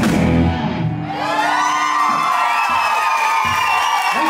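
A live rock band's song ends about a second in, and the audience cheers and whoops.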